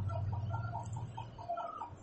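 A small bird's rapid chirps, a run of short high notes about six a second, heard faintly over a steady low hum.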